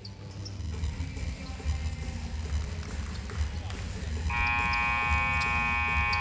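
Basketball arena sound: bass-heavy PA music over crowd noise with scattered claps. About four seconds in, the arena's game horn sounds as a loud, steady buzz that holds to the end. It is the horn that ends the break between periods.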